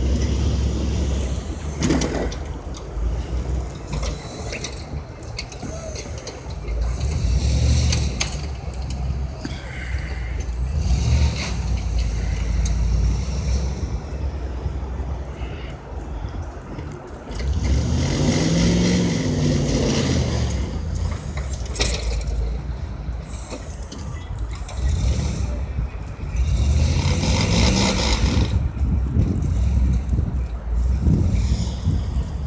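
Engine of a pickup truck fitted with a snowplow, running as the truck manoeuvres, with a low rumble throughout. It revs up and back down twice, once a little past the middle and again near the end.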